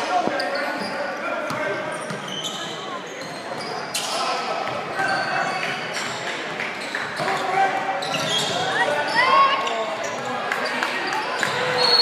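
Sounds of a basketball game in a gym: a ball bouncing on the hardwood court and sneakers squeaking, under the voices of players and spectators calling out, all echoing in the hall.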